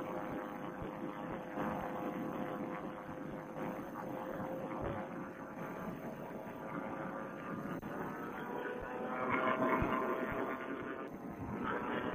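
Vittorazi Moster two-stroke paramotor engine and propeller running steadily in cruise, a droning hum heard thin and muffled through a Bluetooth headset microphone. The drone swells and rises a little in pitch about nine seconds in.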